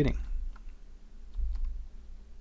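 A few faint clicks of a computer keyboard, over a low rumble on the microphone that swells twice, at the start and about a second and a half in.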